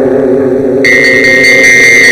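Tamil film song music in an instrumental passage: sustained notes with a slow wavering pitch, joined about a second in by a steady high held tone.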